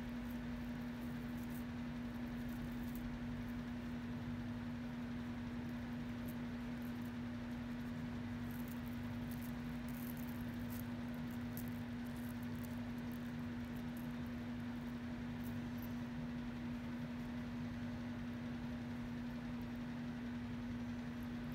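A steady low hum runs throughout. Over it come faint, scattered light clinks and rustles of thin metal jewelry chains being handled and untangled by hand.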